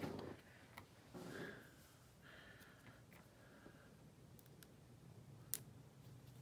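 Near silence with faint rustling of hands handling small paper pieces and foam adhesive, a few soft clicks, and one sharp tick about five and a half seconds in.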